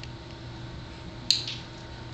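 A single sharp, wet squelch a little past the middle as hands dig into a fake-blood-covered prop body to pull out its heart, over a steady low hum in the room.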